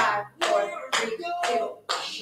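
Tap shoes striking a hard studio floor in steady marching steps on the toes, about two a second, each step a sharp click. A woman's voice counts down along with the steps.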